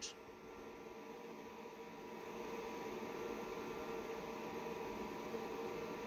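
Faint steady electrical hum with a hiss underneath, growing slightly louder after about two seconds: background noise of a home recording setup.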